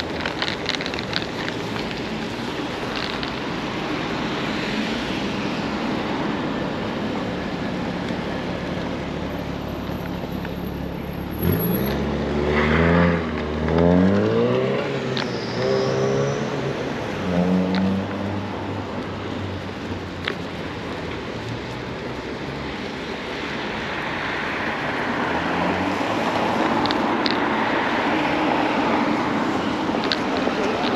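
A motor vehicle's engine accelerating nearby about halfway through, its pitch climbing and dropping back in several steps, over a steady hiss of traffic and wind.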